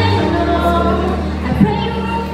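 A young woman singing into a microphone over a backing track of sustained low accompaniment notes, amplified in a hall, with a brief bump about halfway through.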